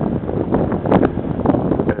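Strong wind buffeting the microphone: a loud, gusty rumble and rush.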